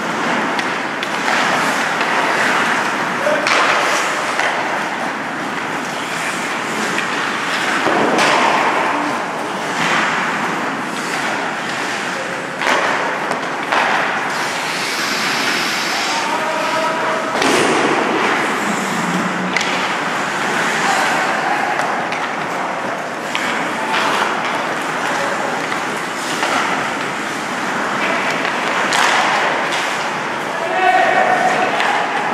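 Ice hockey play: skates scraping across the ice, with sticks and puck clacking and frequent thuds, and occasional shouts from players.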